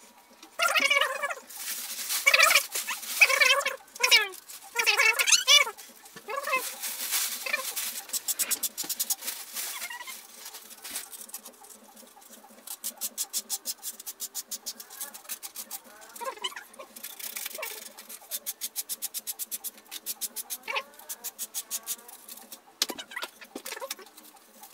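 A man's voice pitched up and chattering from double-speed playback for the first several seconds. Then come runs of rapid, even clicking as he works by hand on the fitting at the end of a wooden desk leg.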